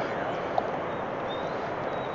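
Steady outdoor background noise with no distinct source, and a faint short tick about half a second in.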